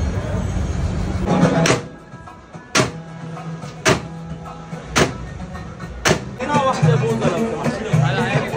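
Long wooden pestles pounding Arabic ice cream (booza) in metal freezer wells: five sharp bangs about a second apart. Near the end, loud voices calling out with sliding pitch take over.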